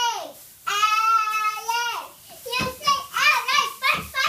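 Young girl chanting a cheer in a high voice: a short shout, a long held call, then a quick run of shouted syllables.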